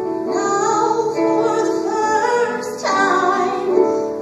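A solo voice singing a show-tune melody over instrumental accompaniment in a live stage musical.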